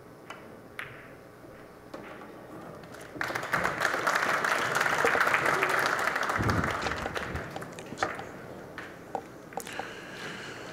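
A few light clicks of pool balls, then, about three seconds in, an audience bursts into applause that holds for several seconds and dies away near the end.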